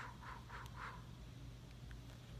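Soft, rapid whooshes of a hand fanning air at the face to dry freshly airbrushed eyeshadow, about four a second, stopping about a second in.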